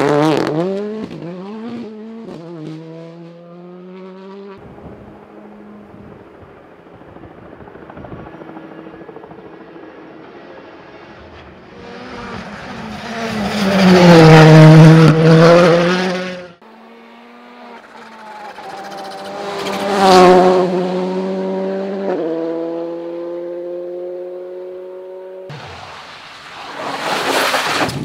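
Rally cars passing at speed one after another on a tarmac stage, engines revving hard and rising through quick upshifts. The loudest car goes by about halfway through. The sound breaks off abruptly twice as one car gives way to the next.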